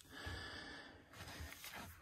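A person breathing faintly, two breaths in a row.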